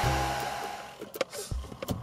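Handheld hair dryer blowing, a steady rushing hiss with a high whine in it, that fades away about a second in; a few faint clicks follow.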